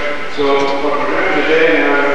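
Speech: a fairly high-pitched voice talking, picked up through a handheld microphone.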